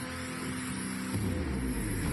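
Intro music with held low guitar notes. About a second in it changes to a denser, lower rumbling texture.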